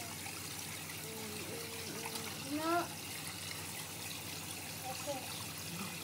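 Electric foot spa bath running: a steady low hum under churning, trickling water.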